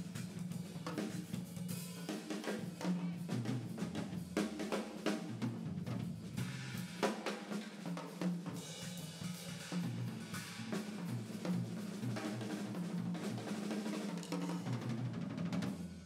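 Jazz drum kit solo: rolls and fills on snare, toms and bass drum with cymbal strikes, played with sticks.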